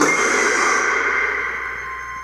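A sudden, loud sound-effect hit from a film trailer soundtrack: a hiss-like swell with a held high tone that fades away over about two seconds.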